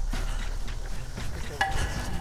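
Background music from the show's edit, with a brief ringing tone struck about one and a half seconds in.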